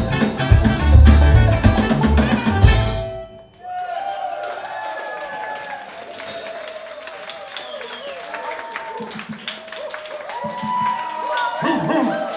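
A live band with drums, saxophone, trumpet and guitar plays the last bars of a song, with a heavy kick drum, and stops on a final hit about three seconds in. The audience then cheers and shouts.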